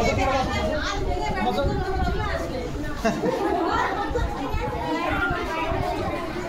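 Overlapping chatter of many adults and children talking at once, with no single voice standing out.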